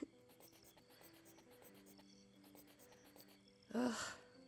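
Quiet scratching strokes of writing on paper, over soft background music with long held notes. A short groan near the end.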